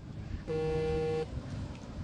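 A horn sounding one steady toot of under a second, about half a second in.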